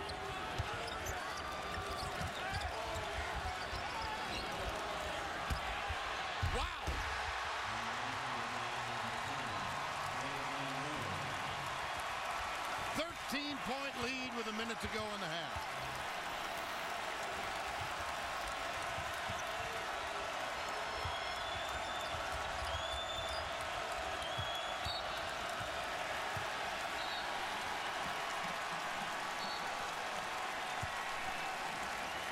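A basketball being dribbled on a hardwood court amid the steady noise of a large arena crowd, with a few raised voices about a third and halfway through.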